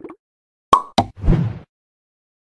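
Sound effects of an animated end card: a sharp pop with a brief ringing tone just under a second in, a second click about a quarter second later, then a low thump with a short rush of noise.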